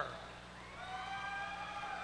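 A single long, high-pitched call from the audience: it rises slightly, then is held steady for over a second before fading near the end.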